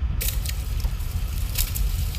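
Water and snakehead fish splashing and slapping as they are tipped out of a metal pot onto a woven mat. The crisp splashing starts just after the beginning, over a steady low rumble.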